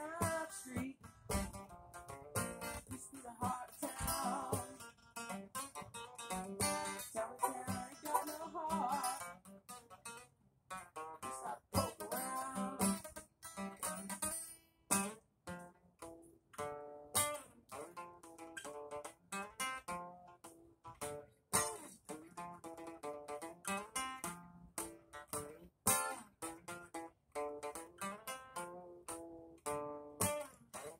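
Acoustic guitar strummed and picked in an instrumental passage, with rhythmic strums throughout and no singing.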